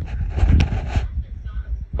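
Rustling handling noise with a low rumble for about the first second, with one sharp click partway through, then quieter.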